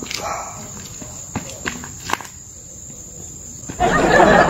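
Crickets trilling steadily in a high thin tone, with a few sharp scuffs of shoes on pavement. A much louder rush of noise starts just before the end.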